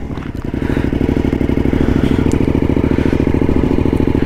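Motorcycle engine pulling away and running at low, steady speed across rough grass, getting louder over the first second and then holding even.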